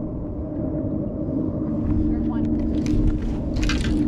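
Steady low hum of a bass boat's electric trolling motor under low wind rumble on the microphone, with a few sharp clicks near the end.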